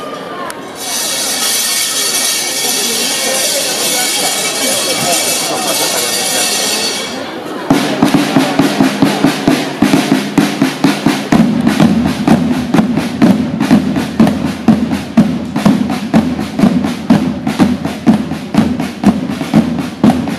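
A troupe of drummers on snare-type drums, first holding a sustained roll for about seven seconds, then breaking into a fast, driving beat of sharp strokes played together.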